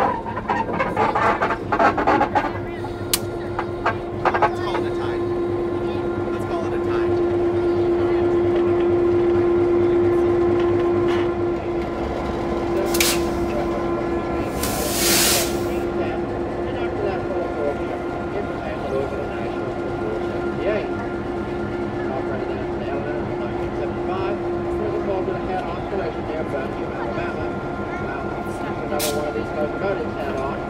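Diesel-electric locomotive running nearby with a steady engine drone that swells for a few seconds and then settles. Two short hisses come near the middle.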